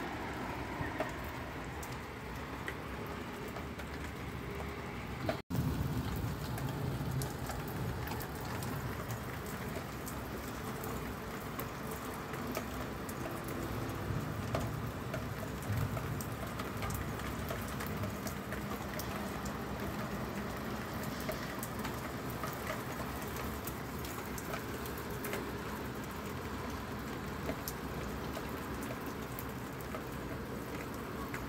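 Rain falling steadily: an even hiss dotted with many small raindrop ticks. The sound breaks off for an instant about five seconds in, and after that a low rumble sits under the rain.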